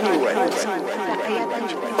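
Spoken-word vocal sample in a psytrance track, with several voices overlapping and no kick drum or bassline under them.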